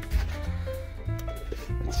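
Background music: held notes over a steady low bass.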